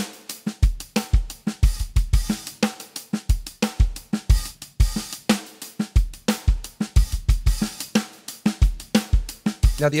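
Native Instruments Studio Drummer sampled drum kit playing a steady 16th-note hi-hat groove with open and closed hats, kick and snare. The MIDI has been loosened with swing, reduced tightness and randomized velocity, so the hits vary slightly in loudness and timing like a real drummer.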